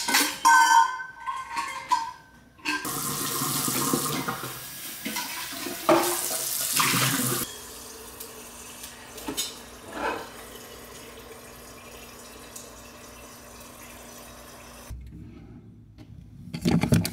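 Refrigerator door water dispenser running into a large Stanley tumbler. A few clinks of the cup come first, then a steady rush of water that drops to a quieter flow with a low hum about halfway through, and it stops near the end.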